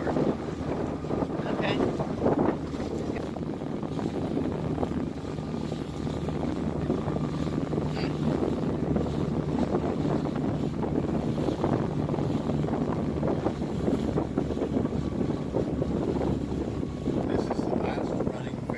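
Small car ferry under way, its engine running with a steady low hum, and wind buffeting the microphone over the rush of river water along the hull.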